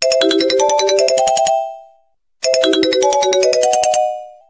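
A short ringtone-like tune of quick, high pitched notes, played twice. Each phrase rings for about a second and a half and dies away, with a brief silence before it repeats.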